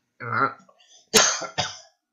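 A person clears their throat, then coughs sharply about a second in, with a smaller cough just after.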